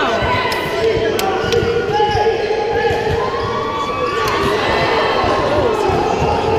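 A basketball bouncing on the court during play, with players and spectators shouting and calling out over it.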